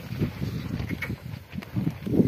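A pair of bullocks pulling a wooden plough through a field: irregular low thuds of hooves and the implement working the soil, mixed with a low rumble.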